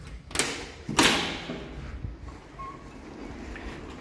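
Aluminium-framed glass entrance door being unlatched and pushed open by its bar: a click about a third of a second in, then a louder clack with a short ring about a second in.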